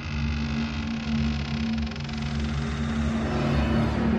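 Dark movie-trailer sound design: a steady low drone with a deep rumble beneath and a hissing wash above, swelling slightly near the end.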